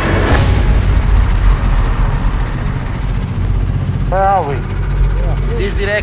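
Snowmobile engines idling, a steady low rumble. A short shouted call rises and falls about four seconds in, and voices come in near the end.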